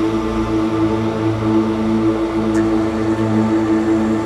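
Dark ambient music: a steady drone of held low tones with a faint hiss above.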